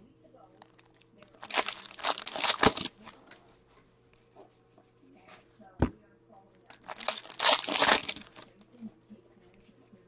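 Foil Upper Deck hockey card pack wrappers being torn open and crinkled by hand, in two bursts a few seconds apart, with a single sharp click between them.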